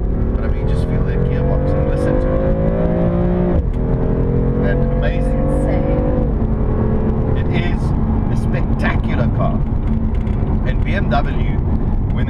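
BMW M4's twin-turbo inline-six heard from inside the cabin, accelerating through the gears: its pitch climbs, drops sharply at an upshift about three and a half seconds in, climbs again and drops at another shift about six seconds in, then runs on more steadily under road rumble.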